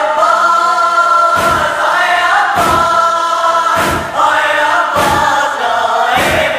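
Male voices of a nauha chorus holding long wordless notes of a lament, the pitch changing every couple of seconds. A low thump about every 1.2 seconds keeps the beat.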